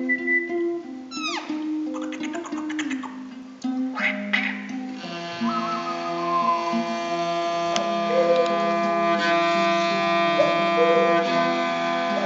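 Traditional Altai music: a bowed two-string fiddle and a small plucked lute. In the first few seconds there are high, whistle-like tones and a quick falling sweep. From about five seconds in, a sustained drone rich in overtones fills out the sound.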